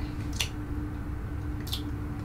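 Two faint wet mouth clicks, about a second apart, from a person tasting a sip of liqueur, over a steady low room hum.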